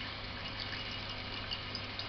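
Steady faint sound of running liquid, with a low hum underneath.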